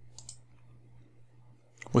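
A few faint, quick computer mouse clicks near the start.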